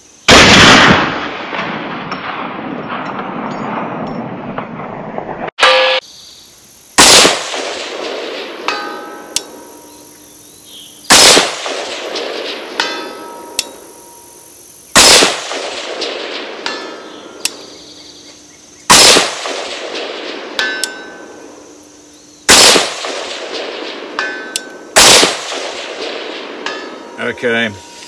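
Seven rifle shots from a Bear Creek Arsenal AR-15 in 6.5 Grendel, fired every few seconds, each followed about a second and a half later by a faint ring from a distant steel target.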